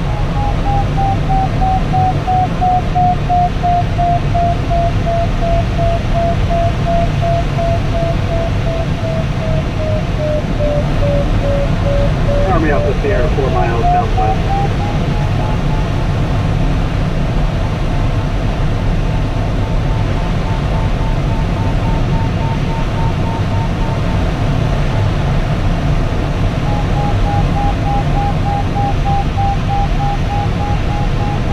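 A sailplane's electronic variometer tone sliding slowly in pitch, falling over the first twelve seconds, then rising and pulsing in beeps later on; its pitch tracks the glider's climb or sink rate. Underneath is steady airflow noise in the cockpit of a DG-800 glider.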